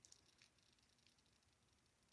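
Near silence: room tone, with a couple of faint soft ticks from hands pinching a ball of clay.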